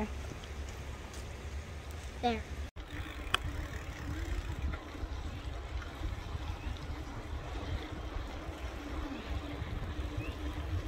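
Steady wind rumble on the microphone while riding a bicycle along a trail, starting after an abrupt cut about three seconds in.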